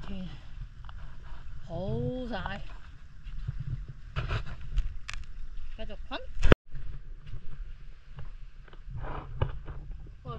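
Seawater sloshing and splashing at a camera held at the surface while swimming, with wind rumbling on the microphone. A short vocal sound comes about two seconds in. A sharp knock about six and a half seconds in is followed by a brief dropout.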